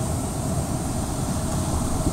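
Steady low rumble of waves breaking in the shallows, mixed with wind.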